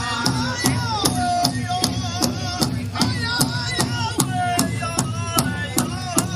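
Powwow drum song: a large drum struck in a steady beat, about two and a half beats a second, under a group of singers chanting in phrases that slide down in pitch.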